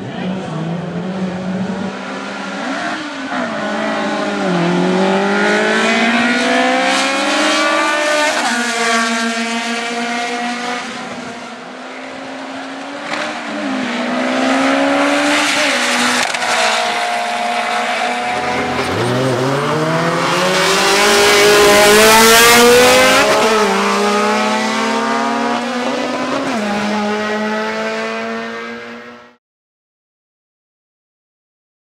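Drag-racing cars accelerating hard down the strip, their engines revving up through the gears, with the pitch climbing and dropping back at each upshift. There are two runs, a long pause in pitch between them about 12 s in; the second, starting about 18 s in, is the loudest. The sound cuts off suddenly near the end.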